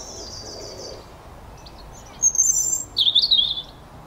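A small bird singing: a thin trill in the first second, then two loud phrases of high chirping and warbling in the second half.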